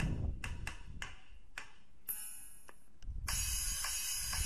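Drum samples from a drum kit app played through a Samsung Galaxy S5 phone's small speaker as on-screen drums and cymbals are tapped: a string of short, thin hits, then a sustained cymbal wash from about three seconds in.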